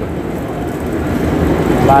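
Steady background noise of a busy railway station platform: a low, even hum of noise with no clear tones, growing a little louder toward the end.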